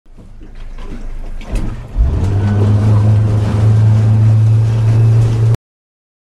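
A boat's engine running, heard from inside the cabin with the rush of the hull through water. The noise builds, then from about two seconds in a steady low hum sets in, and it cuts off abruptly near the end.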